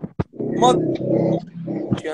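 Men's voices on a video call, briefly talking over each other, after two short sharp sounds at the start.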